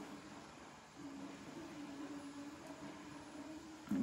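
Quiet room tone with a faint, steady low hum that sets in about a second in.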